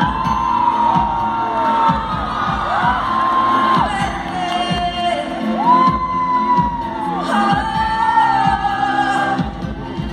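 Live pop band with keyboards, electric guitar and a steady drum beat backing a female singer holding long, gliding notes, heard through a phone's microphone in the audience. The crowd whoops and cheers underneath.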